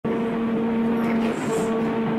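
A child making a steady buzzing engine noise with his lips, pausing briefly about a second in and then carrying on.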